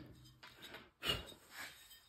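Faint handling sounds as a throttle body is taken apart by hand, with a short rustle about a second in and a few small knocks of the parts.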